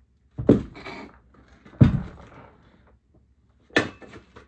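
Heavy hex dumbbells set down on a floor: two loud thuds about a second and a half apart, followed by a shorter, sharper knock just before the end.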